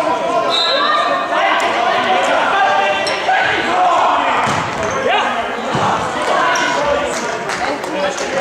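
Indoor football match in a sports hall: a futsal ball being kicked and bouncing off the hard hall floor, with a steady mix of voices calling and chattering, echoing in the large hall.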